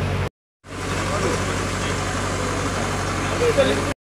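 Steady background noise with a low hum and faint voices, cut to silence for a moment just after the start and again at the end.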